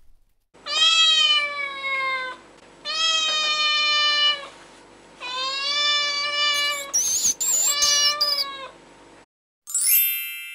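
A cat meowing three long times, each meow drawn out and sliding slightly down in pitch. Brief, very high-pitched squeaking follows, and a bright chime starts right at the end.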